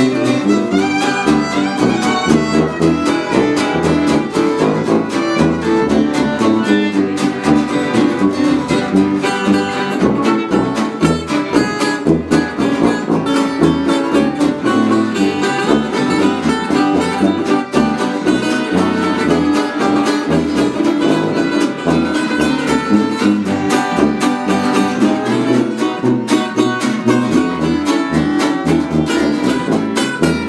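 Live acoustic string band playing an instrumental passage of a jazz tune: fiddle, acoustic guitar and a metal-bodied resonator guitar.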